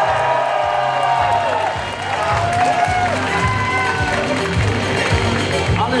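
Upbeat music with a steady beat playing loudly, with an audience cheering and clapping over it: a crowd vote by applause for the posing contestants.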